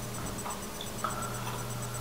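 A pause with no speech: a steady low hum over faint room noise.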